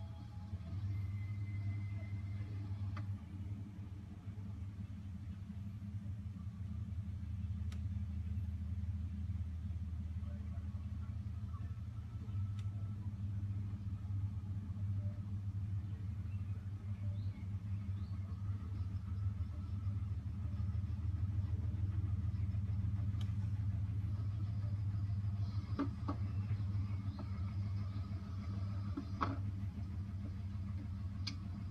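Vehicle engine idling, heard from inside the cab: a steady low hum, with a few faint clicks in the last few seconds.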